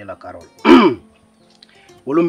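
One short, loud vocal burst from a man about half a second in, falling in pitch, like a throat-clearing cough or a sharp exclamation.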